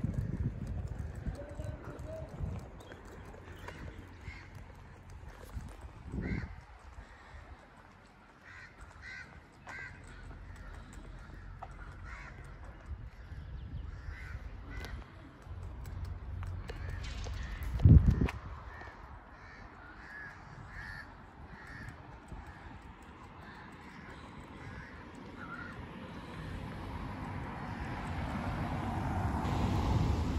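Birds calling in series of short repeated calls, over low wind rumble on the microphone that grows louder near the end. A single loud thump comes about eighteen seconds in.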